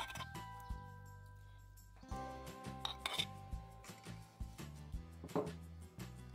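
Background music with held notes, over scattered short taps and scrapes of a metal spoon knocking crushed garlic out of a wooden mortar into an aluminium pot.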